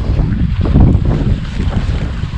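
Wind buffeting the microphone, a heavy uneven rumble.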